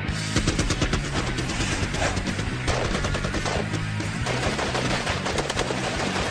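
Gunfire from a firefight: rapid, continuous volleys of shots, mixed over background music with sustained low notes.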